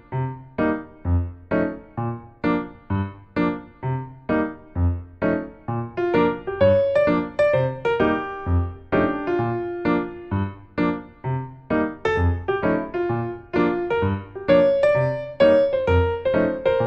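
Background music on a piano-like keyboard: evenly spaced notes about two a second, with a held melody line coming in about six seconds in.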